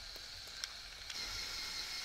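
Electric motors of a remote-controlled LEGO Technic excavator whirring faintly, with a few light clicks; the whine gets a little louder about a second in as the model moves.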